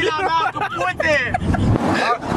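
Several young men's voices shouting and chanting inside a moving car, over the car's running road noise. Near the end a rush of noise with a low rumble swells up.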